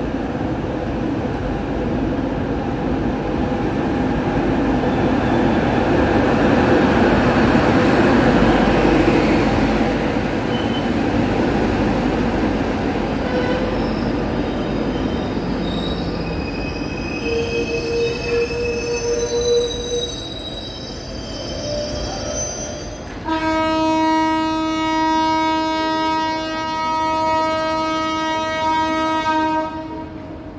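Indian Railways express with ICF coaches arriving at a platform: a loud rumble of wheels on rails that builds and then eases as the coaches roll past. High squeals from wheels and brakes follow as the train slows. Near the end a train horn gives one long, steady blast.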